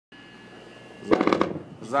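Speech: a man's voice cuts in about a second in and again near the end, over a faint steady hum.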